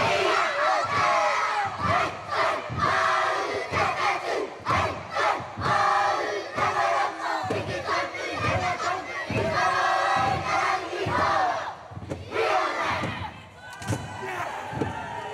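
A group of children performing a haka: many young voices shouting the words fiercely in unison, in short rhythmic phrases, with stamping and body slaps in time.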